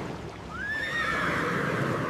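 Horse whinnying: one high call that starts about half a second in, rises and then eases down, and is drawn out for over a second.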